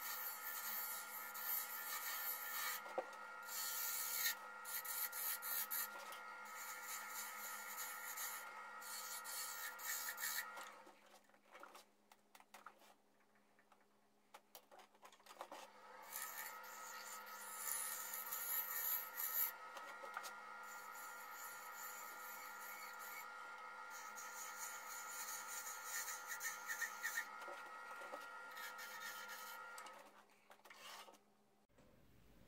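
Wood lathe running with a steady motor whine while a hand-held turning tool scrapes and cuts the spinning wooden box lid. The sound drops away for a few seconds around the middle, then the lathe and cutting resume until near the end.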